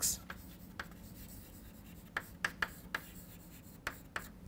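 Chalk writing on a chalkboard: a series of short, sharp taps and scrapes as letters are written, several close together in the second half.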